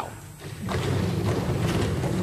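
Many members of parliament thumping their desks in approval: a dense, continuous pounding of many hands that swells up about half a second in.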